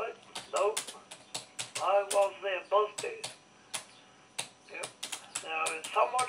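Irregular clicking keystrokes on a computer keyboard, typed in quick runs, with a voice talking in short stretches between them.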